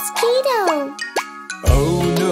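Cartoon soundtrack: a character's wordless, sliding vocal exclamation, then a quick upward-sweeping pop effect, and children's music with a bass beat coming in near the end.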